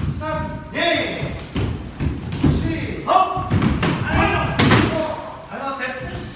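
Short shouted voices over repeated thuds of bare feet stepping and stamping on a wooden floor as karate students drill, echoing in a large hall.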